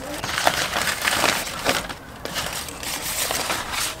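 Handling of a bouquet: the florist's paper wrapping crinkling and flower and eucalyptus stems rustling, in irregular bursts with a few sharp small clicks.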